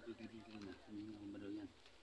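A dove cooing: two low coos in a row, the second longer and steadier.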